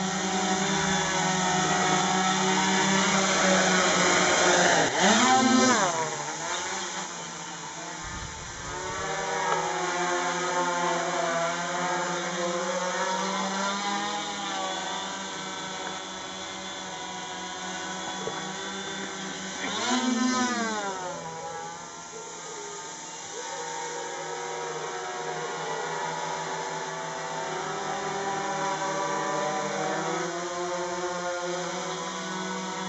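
F450 quadcopter's four electric motors and propellers whining steadily in flight, the pitch wavering as the throttle changes. It grows louder with a sharp swing in pitch as it flies close past, about five seconds in and again about twenty seconds in.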